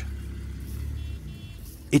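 Low rumble of a car engine idling, fading away about a second and a half in.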